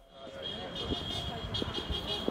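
Outdoor street background of a gathered crowd with low traffic rumble and faint indistinct voices. A thin steady high tone comes in under a second in.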